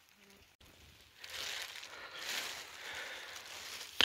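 Near silence for about a second, then a steady rustling and crinkling noise, like wet foliage and clothing brushing as someone moves through damp forest undergrowth.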